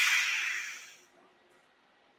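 A custom neopixel lightsaber's CFX sound board playing its ignition sound on a button press, heard over a video call: a bright hissing burst that fades away within about a second. The sound shows the freshly soldered board is powered and working.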